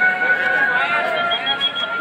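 Voices singing a slow song with long held notes, amid a crowd.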